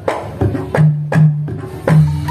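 A Javanese kendang drum being played by hand: a run of about six strokes roughly every half second, several of them with a deep ringing tone.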